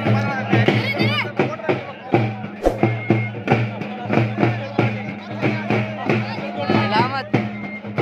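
Frame drums (halgi) beating a fast, steady rhythm over a low steady drone, with crowd voices mixed in.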